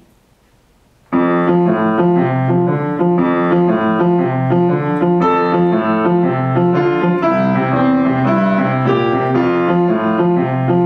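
Rameau upright piano played in boogie-woogie style, starting about a second in, with a steady repeating left-hand bass pattern under right-hand chords.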